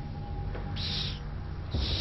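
A pause in speech with a steady low hum from the studio hall. There is a brief hiss about a second in.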